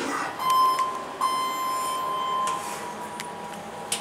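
Elevator car's electronic signal buzzer sounding a double buzz: a short buzz, then after a brief gap a longer one of about a second and a half.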